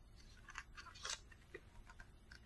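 Faint crisp rustles and soft clicks of paper being handled, as the pages of a spiral-bound booklet are turned; half a dozen short sounds, scattered unevenly.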